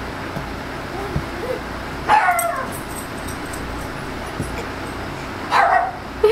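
A dog barking: two loud barks, each falling in pitch, about two seconds in and again near the end.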